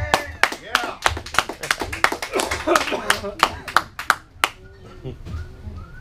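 A small audience clapping by hand, the separate claps distinct, with people talking over them; the clapping stops about four and a half seconds in.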